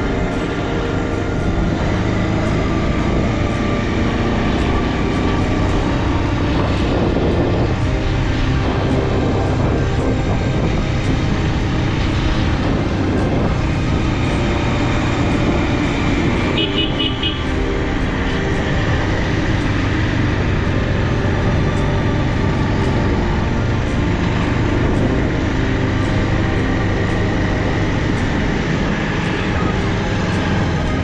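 Motorcycle engine running steadily as the bike rides along, heard from the rider's own machine together with road and air noise. A brief high-pitched chirping sounds about halfway through.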